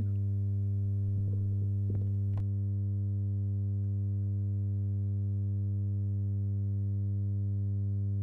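A steady low hum with a stack of evenly spaced overtones, unchanging throughout, with a few faint clicks in the first two and a half seconds.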